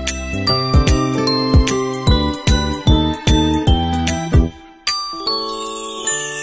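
Background music: a light, chiming tune over a steady beat. It drops out briefly about three-quarters of the way in and comes back with held chords and a falling high sweep.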